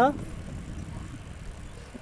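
Steady low rumble of wind on the microphone and tyre noise from a bicycle riding along an asphalt road, with the last of a spoken word at the very start.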